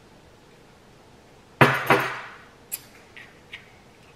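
A glass sauce bottle set down on a table: two sharp knocks about a third of a second apart with a short glassy ring, then a few light clinks of tableware.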